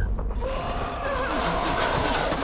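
Clicking at first, then a steady hiss like tape static, with faint wavering tones in it.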